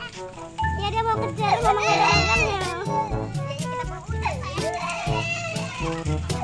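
Young children's voices over background music with a repeating bass beat.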